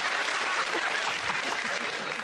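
Studio audience applauding and laughing in response to a punchline.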